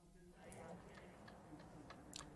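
Near silence: faint outdoor ambience with a few faint, scattered clicks and faint distant voices.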